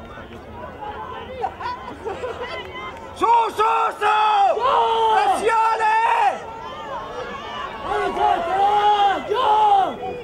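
Spectators' voices shouting close by: a run of short, high-pitched shouts starting about three seconds in, a brief lull, then more shouts near the end, over background crowd noise.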